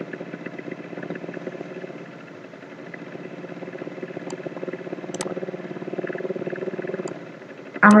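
A steady low hum of a running motor, swelling slowly in the second half, with a few faint clicks.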